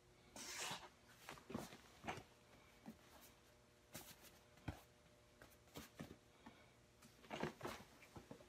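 Faint, scattered creaks, clicks and rustles of a gaming chair and clothing as a person sits in it, gets up and sits back down. There is a short rustle just after the start, a few separate ticks, and a cluster of clicks near the end.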